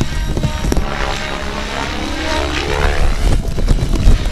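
Radio-controlled 3D helicopter's rotor and motor running, the pitch bending up and down as it flies an aerobatic maneuver, over background music with a steady beat.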